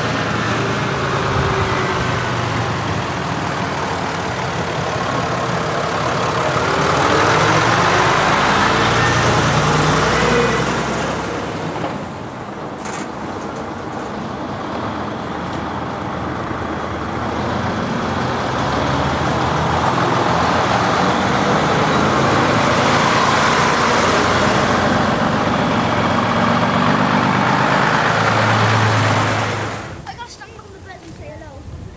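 Diesel engines of vintage AEC commercial vehicles driving past: first an AEC tractor unit pulling a trailer, growing louder as it passes, then after a break about 13 seconds in, a coach pulling past with a long, steady engine note that stays loud until it cuts off suddenly at the end.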